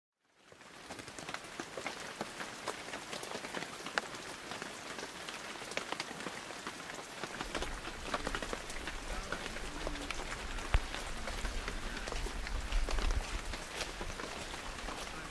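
Light rain pattering: a steady hiss full of irregular sharp drop ticks close to the microphone. A low wind rumble joins about halfway through.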